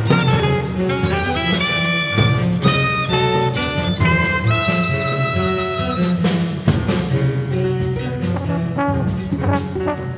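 Small jazz ensemble playing dense, free-moving music, with trombone and other horns in many quick overlapping notes and frequent sharp percussive attacks.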